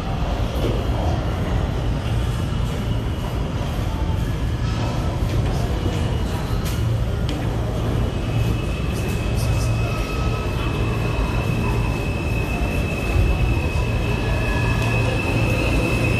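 A New York City subway train approaching and pulling into an underground station, with a steady low rumble and a few sharp clicks. About halfway through, a high, steady squeal joins in and grows louder as the train comes alongside.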